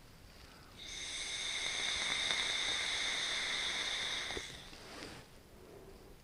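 A long draw on an e-cigarette: air hisses through the atomizer with a steady whistle for about three and a half seconds, then a soft exhale of the vapour.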